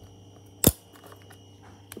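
The lid of an Alba portable DVD player being opened: one sharp click from the lid catch releasing, with a fainter click near the end.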